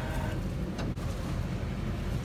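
Tow truck engine running steadily as a low rumble while the winch cable is drawn tight on the vehicle in the ditch.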